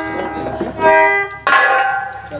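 Live stage accompaniment of sustained, ringing instrument notes, with a sharp struck onset about one and a half seconds in.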